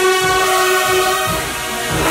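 A marching band's brass section of sousaphones and trombones holding a loud, sustained chord.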